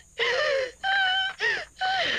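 A woman crying aloud, wailing in four broken, high-pitched sobs with short catches of breath between them.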